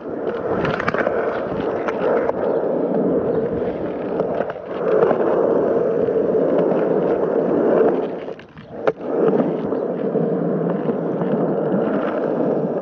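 Skateboard wheels rolling on concrete with a continuous rumble. About eight and a half seconds in, the rumble drops out briefly, followed by a single sharp clack of the board before the rolling resumes.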